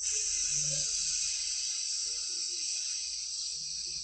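A person's long, steady hissing exhale. It starts abruptly, eases off slightly, and cuts off after about four seconds.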